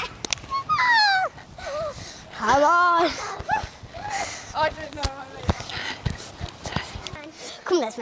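Young girls' voices calling out and squealing without clear words: a falling cry about a second in, a wavering call near three seconds, and shorter calls after, with a few soft thuds in the second half.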